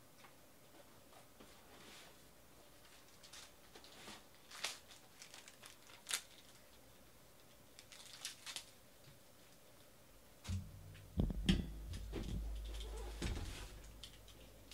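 Cardboard packaging being handled: scattered light clicks and crinkles of tape and cardboard, then about ten seconds in a cardboard box is moved and set down with a few thumps and a low rubbing rumble for about three seconds.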